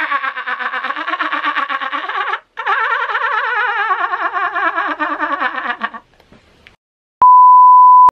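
A man's long wordless yell, held on a rapidly wavering pitch, in two stretches with a brief break between them, stopping about six seconds in. About a second later a loud, steady test-tone beep of the kind played with television colour bars starts suddenly and holds.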